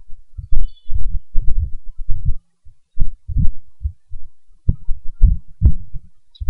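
Irregular dull low-pitched thumps, about two a second, with no speech.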